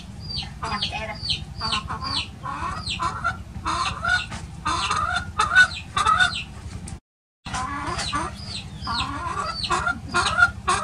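A young chicken calling over and over, short high peeps that fall in pitch, several a second, mixed with lower clucks. The sound cuts out completely for a moment about seven seconds in.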